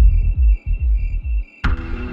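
Dark progressive psytrance: a rolling kick-and-bass pattern under a faint, high repeating chirp. It cuts out about a second and a half in, then a sharp crash-like hit brings in a line of melodic notes.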